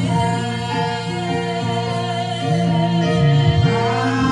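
A woman singing a gospel worship song into a microphone over musical accompaniment, holding long notes.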